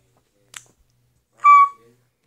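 A light tap, then a single short, high-pitched 'ding' about a second and a half in, the loudest sound here: a pretend elevator arrival chime, given when a floor button on a hand-drawn elevator panel is pressed.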